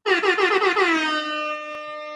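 Air horn sound effect: one long blast that starts abruptly, slides a little lower in pitch over the first second, then holds steady and cuts off suddenly.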